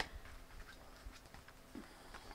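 Faint, scattered ticks and light rustle of a tarot deck being handled and cards set down, after a single sharp click at the start.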